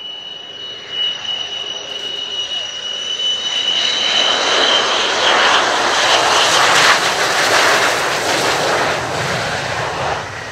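Twin J79 turbojets of an F-4EJ Kai Phantom II on landing approach. A steady high-pitched whine comes first, then louder jet noise builds to a peak about midway as the fighter passes close, easing slightly toward the end.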